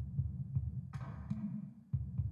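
Dark techno loop playing: a pulsing low bassline and beat, with one long open hi-hat hit from a 909 kit about a second in that fades out slowly. The one-bar pattern repeats every two seconds, dipping briefly just before it restarts at the end.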